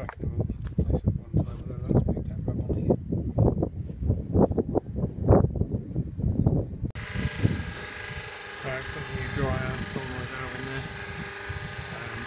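Wind buffeting the microphone in irregular gusts. About seven seconds in, the sound cuts abruptly to a steady mechanical hum and hiss with a thin high tone.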